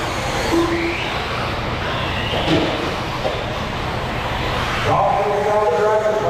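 Electric RC buggies racing: a steady mechanical din with two rising motor whines, about one and about two and a half seconds in, as cars accelerate. Voices come in near the end.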